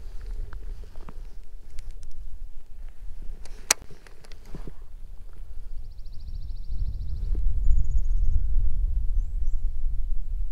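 Wind rumbling on the microphone, building to the loudest sound in the last few seconds, over scattered handling clicks with one sharp click near the middle. About two seconds of fast, fine clicking comes from a baitcasting reel being handled up close.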